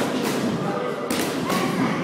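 Two thuds on training mats, about a second apart, over background chatter echoing in a large hall.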